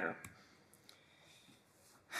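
Near silence in a small room after the last word of a sentence, with a few faint, brief clicks.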